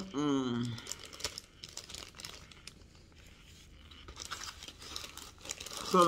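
Clear plastic zip-top bag crinkling as it is handled, the crackling growing busier in the last couple of seconds. A short hummed "mm" falling in pitch opens it.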